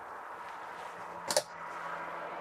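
A single sharp click a little over a second in as an overhead kitchen cabinet door is pulled open and its catch releases. A faint steady hum runs underneath.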